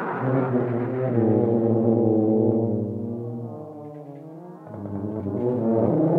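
Tuba playing low, sustained notes that fade to a quieter tone around the middle; near the end a rougher, buzzier tone swells back in.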